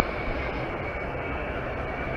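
Steady rumbling outdoor background noise with a faint, steady high whine over it.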